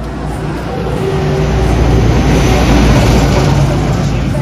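A truck passing close by on the road, its engine hum and tyre noise growing louder to a peak about three seconds in and then starting to fade.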